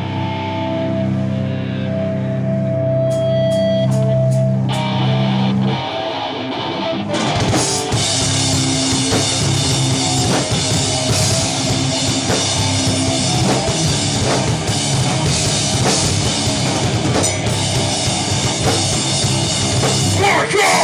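Live metal band playing loud electric guitars, bass and drums. The song opens with long held notes, and about seven seconds in the full band comes in with the drums.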